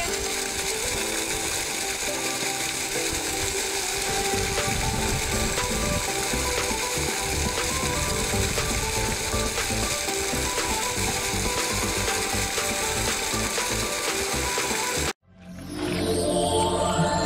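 Latteys LCM20 centrifugal monoblock pump running steadily, its motor giving a dense rattling mechanical sound over the rush of water from the discharge pipe. The sound cuts off abruptly near the end.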